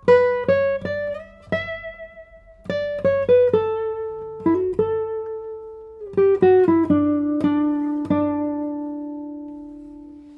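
Matthias Hartig 2022 No. 68 classical guitar (spruce top, Indian rosewood back and sides) played solo in a slow melodic line of plucked notes. The tone is bright in the trebles, and the passage ends on a long note left to ring and fade.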